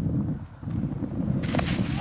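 Wind buffeting the microphone as a low rumble throughout; about one and a half seconds in, a short scraping crash as a snowboarder lands hard and slides on packed snow.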